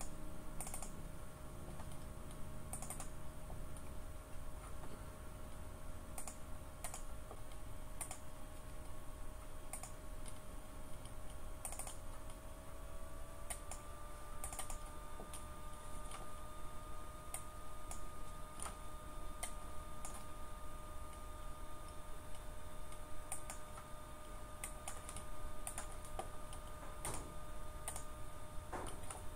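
Irregular clicks of a computer mouse and keyboard being worked, over a faint steady hum of a few tones that steps up slightly in pitch about halfway through.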